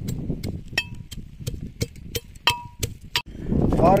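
Pestle pounding garlic cloves and spices in a tall iron mortar: sharp, even strikes about three to four a second, some with a short metallic ring. The pounding stops suddenly about three seconds in and a man's voice takes over.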